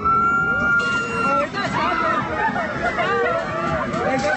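A rider screaming on an upside-down amusement ride: one long, high scream held for about the first second and a half, then several riders screaming and shouting over each other.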